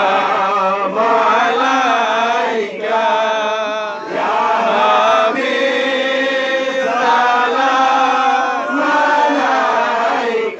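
Men chanting zikr together into microphones, a devotional refrain to a saint sung in drawn-out phrases of a second or two with brief breaks between them. A held, wavering note comes about three seconds in.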